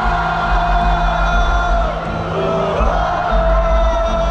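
Live band music played through a large outdoor PA and heard from the crowd's stands: long held notes over heavy, pulsing bass, with crowd noise underneath.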